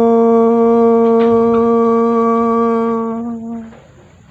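Unaccompanied male voice holding one long, steady sung note at the end of a song. It dies away about three and a half seconds in.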